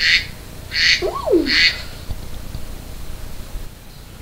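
Girls' voices shrieking in three short, shrill bursts, with a falling vocal swoop about a second in, right after singing together.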